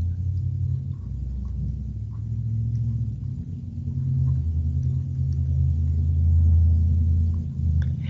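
A low, steady rumble with a faint hum in it, swelling a little and then stopping shortly before the end. A few faint light ticks sound over it.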